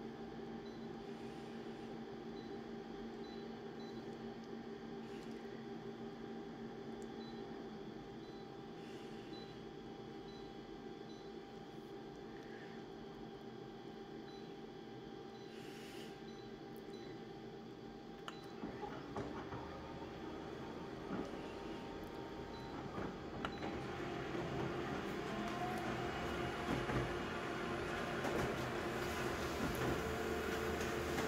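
Multifunction colour copier humming steadily at idle. About two-thirds of the way in it starts a copy run: its motors wind up with a rising whine, and the mechanical noise of the machine working grows louder toward the end as the sheet is fed through.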